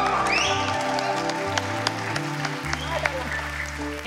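A studio audience clapping over the show's background music, whose bass notes step to a new pitch every second or so.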